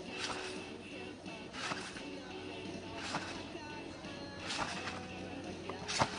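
Trampoline mat and springs taking a jumper's landings in repeated back flips, a short impact about every second and a half, over faint background music.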